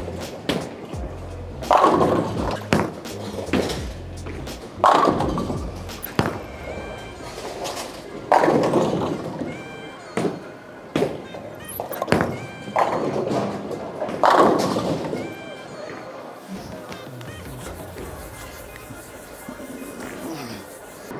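Background music over bowling lane sounds: a bowling ball rolling down a wooden lane and pins crashing, several loud crashes through the first fifteen seconds.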